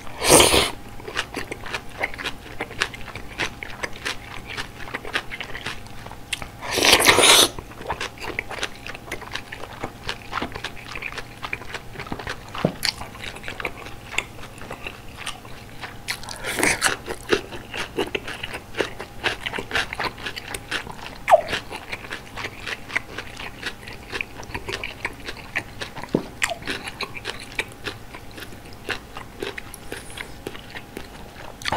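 Close-miked eating of malatang: loud slurps of noodles and greens from the spicy broth, one at the start and a longer one about seven seconds in, with a third noisy burst about sixteen seconds in, between steady wet chewing and crunching full of small clicks.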